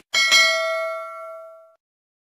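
Notification-bell 'ding' sound effect for a subscribe-button animation: a bright bell tone struck twice in quick succession, ringing and fading away over about a second and a half.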